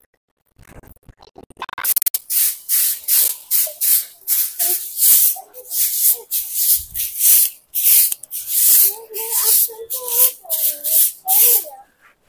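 Stiff stick broom (jhadu) sweeping a bare concrete floor: short rasping swishes, about two strokes a second, starting about two seconds in and running on in a steady rhythm.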